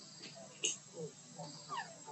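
Baby monkey giving a few short, thin squeaks that fall in pitch, clearest in the second half, with a sharp click about a third of the way in.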